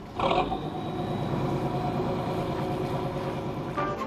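Boat engine running steadily, a low even drone, with a short sharper noise about a quarter second in.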